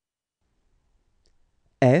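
Near silence, then near the end a man's voice begins to say the French letter name 'F' (èf).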